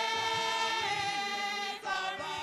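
Women's church choir singing, holding one long chord that breaks off near the end before a new phrase begins.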